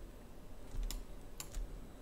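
Computer keys clicking twice, about half a second apart, over a low hum.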